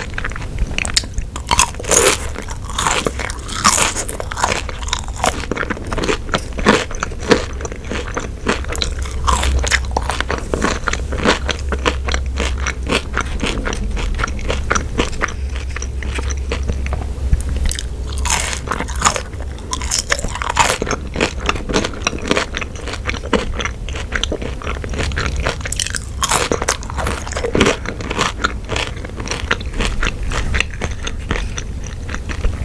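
Close-miked chewing and biting of ketchup-dipped french fries, with many small, irregular crunches throughout.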